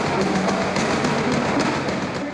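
Band music led by a drum kit, playing a steady beat with cymbal strokes about four times a second.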